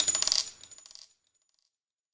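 Small metal pieces tinkling and clattering as they bounce and settle, with a thin, high metallic ring. The sound dies away and stops about a second in.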